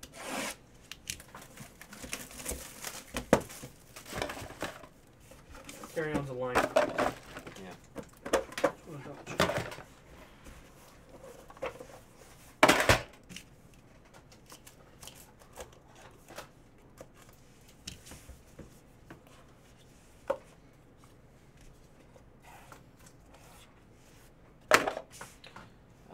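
Cardboard trading-card boxes and cards handled on a table: rubbing and light tapping, with a few sharp knocks, the loudest just before the middle and near the end, as a box lid is lifted and a stack of cards is set down.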